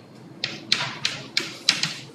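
Chalk writing on a blackboard: a quick run of about five or six sharp taps and short scratchy strokes, one of them drawn out, as characters are chalked.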